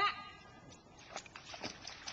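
A single short, loud call at the very start, then a few sharp splashes about a second in as a black retriever sets off from the rock into the pond on its retrieve.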